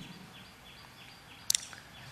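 A quiet pause with a faint high chirp repeating about three times a second, like a small bird, and one sharp click about one and a half seconds in.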